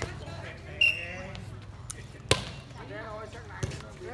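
A short, shrill referee's whistle about a second in, then a sharp smack of a hand hitting the light inflatable volleyball on the serve just past halfway, and a lighter hit on the ball near the end.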